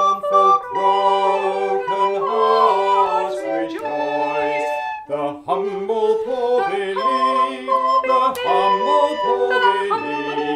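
A hymn verse sung by a woman and a man, accompanied by two wooden recorders, in held, stepwise notes with a short break between lines about five seconds in.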